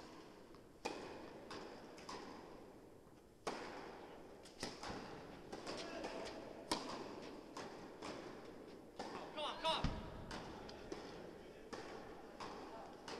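Tennis ball being hit with rackets and bouncing during a rally on an indoor court: a series of sharp hits that ring out in a large hall.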